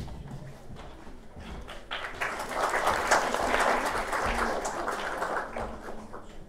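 Audience applauding, starting about two seconds in and dying away near the end.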